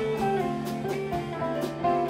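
Live rock band playing: electric guitar melody lines over keyboard and bass, with drums and cymbals keeping a steady beat.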